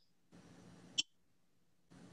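Mostly dead air from a video call whose audio keeps dropping out: two short patches of faint hiss, with a brief sharp click about a second in.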